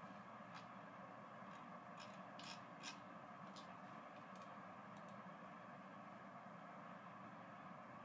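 Near silence: faint steady room hum with a few soft computer-mouse clicks in the first half, the clearest two close together about two and a half seconds in.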